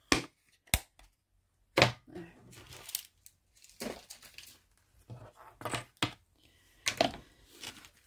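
Hands handling a rolled diamond painting canvas on a wooden desk: a few sharp knocks in the first two seconds, then the canvas and its wrapping crinkling and rustling as it is unrolled, with a louder crackle near the end.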